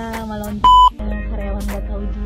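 A single short, loud, steady censor bleep about two-thirds of a second in, masking a word, over background music.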